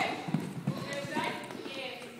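A horse's hoofbeats on soft arena footing as it goes over a low cross-pole fence close by, with a few low hoof strikes in the first second.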